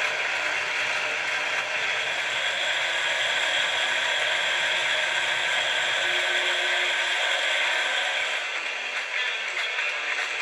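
Wood lathe spinning a wooden spinning top while a hand-held pad is pressed against it for the final sanding and sealing: a steady friction hiss over the lathe's running.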